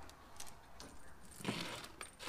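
Faint handling noise of a plasma cutter's rubber-sheathed torch lead being moved across a steel workbench, with a brief rustle and a light knock about one and a half seconds in.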